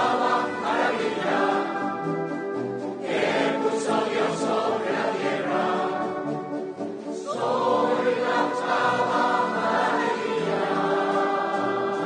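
Mixed choir singing with a concert wind band accompanying, in sustained phrases with fresh full entries about three and seven seconds in.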